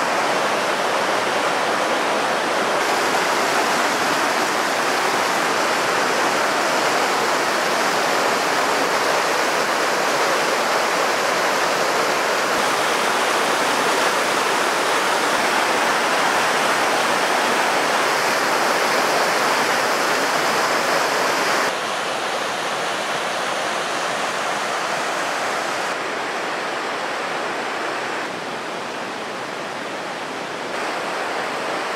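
Fast, muddy mountain river rushing over boulders: a steady sound of white water, a little quieter after about two-thirds of the way through and again near the end.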